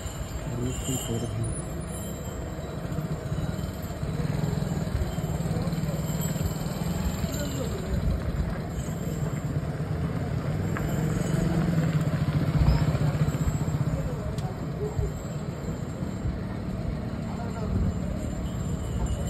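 Outdoor crowd and traffic noise: a steady murmur of voices over a continuous low engine rumble from motorbikes and other vehicles moving about.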